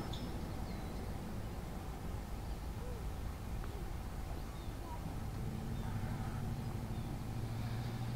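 Quiet outdoor street ambience: a steady low hum that grows a little louder about five seconds in, with a few faint short chirps.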